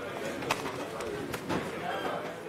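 Indistinct chatter of people in a lecture hall, with a few sharp clicks or knocks, about half a second and a second and a half in.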